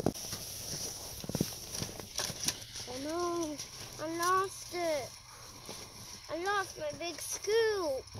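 A young child's high voice making about six short sounds that each rise and fall in pitch, starting about three seconds in. Before them, a few light knocks and scrapes of a plastic toy loader tractor working in snow.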